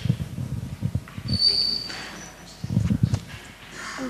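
Handling noise from a handheld microphone as it is passed between panelists: irregular low thumps and rubbing, with a brief thin high squeak about a second and a half in.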